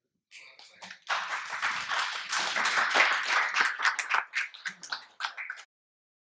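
Audience applauding, a dense clatter of clapping that thins to scattered claps in the last second or so before cutting off suddenly.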